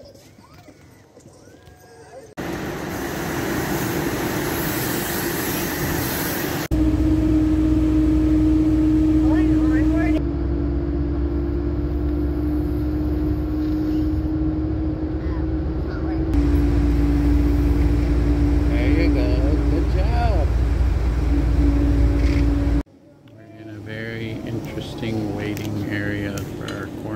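Steady engine and road rumble with a constant hum inside a moving passenger vehicle. The noise starts suddenly about two seconds in and cuts off abruptly near the end.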